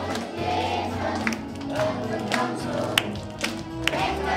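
A group of adults and young children singing along to a backing track, with a few handclaps.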